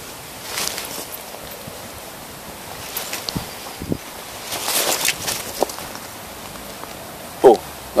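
Rustling from clothing and the handheld camera being moved, in two brief swells about half a second in and about five seconds in, with a few faint knocks between.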